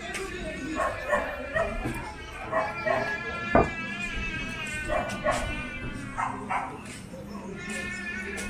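A dog barking in repeated short bursts, over background music and voices, with one sharp knock about three and a half seconds in.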